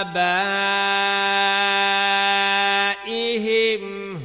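A reciter's voice holding one long, steady note for about three seconds, then a brief melodic turn near the end: a drawn-out vowel in very slow, tajweed-style Quran recitation.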